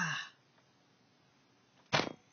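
A man's drawn-out 'ah' trails off, then after a quiet stretch a single sharp knock sounds near the end.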